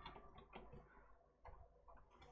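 Near silence with a few faint, scattered clicks of computer keys.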